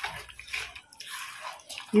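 A spoon stirring thick, wet curry paste in a pan, with a few irregular wet scrapes.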